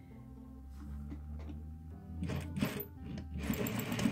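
Sewing machine starting up about halfway through and stitching through the quilt layers, beginning a seam with a back tack, over quiet background music.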